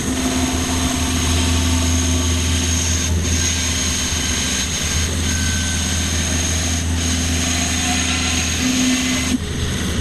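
Grizzly G0513 17-inch bandsaw running and ripping through a wet mesquite log: a loud, steady hum and high whine of the blade in the cut. A little over nine seconds in, the cutting noise drops off suddenly as the blade comes out of the wood.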